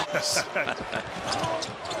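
Basketball dribbled on a hardwood court: a run of short thumps over arena crowd noise.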